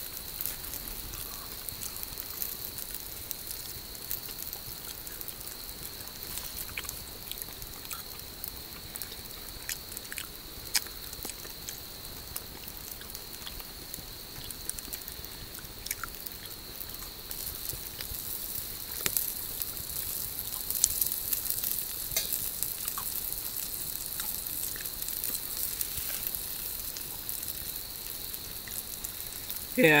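Steady sizzling hiss with scattered small crackles from a small open cooking fire, with a steady high-pitched tone behind it.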